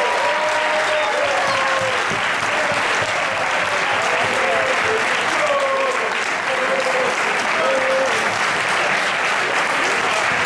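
Audience applauding steadily, with a few voices calling out over the clapping.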